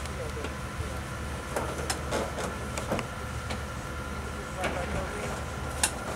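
Steady low hum of an idling engine with a faint steady whine above it, under distant voices. A few sharp knocks or clicks break in, the loudest just before the end.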